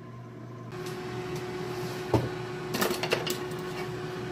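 Power AirFryer XL running mid-cycle at 350 degrees: its fan makes a steady airy noise with a low hum, coming in under a second in. A few light clicks sound about two and three seconds in.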